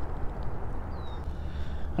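Steady wind rumble on the microphone over small waves lapping against a kayak hull, with one faint, brief high chirp about halfway through.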